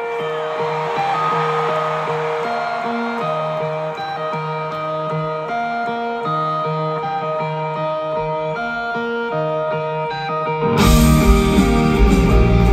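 Live rock music: a clean electric guitar picks a repeating melodic intro riff over a held low note. About eleven seconds in, the full band comes in suddenly and much louder.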